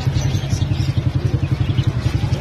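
A small engine idling with a steady, rapid low pulse, with faint high chirps of young chickens above it.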